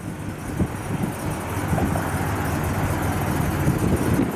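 Oldsmobile 350 Rocket V8 with a four-barrel carburettor running steadily at low revs, slowly getting louder.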